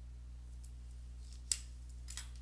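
A steady low hum with one sharp click about one and a half seconds in.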